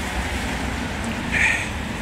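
Street noise: a steady rumble of traffic with wind buffeting the phone's microphone, and a brief brighter hiss about one and a half seconds in.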